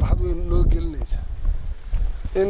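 Wind rumbling on the microphone, with a man's voice briefly heard near the start.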